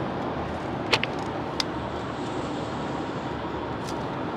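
Steady road and engine noise inside the cabin of a car cruising on a highway, with three short clicks: about a second in, shortly after, and near the end.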